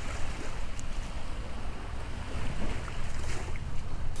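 Steady rush of wind and water along the hull of a Maestro 82 motor yacht under way.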